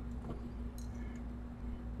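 Quiet room tone with a steady low hum and a few faint ticks from a small metal tool being handled.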